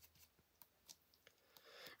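Near silence, with a few faint light ticks of a soft ink brush flicking ink onto card.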